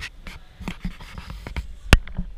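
Handling noise from a handheld camera: fingers rubbing and tapping on the camera body, making a string of small clicks with one sharp, loud click near the end.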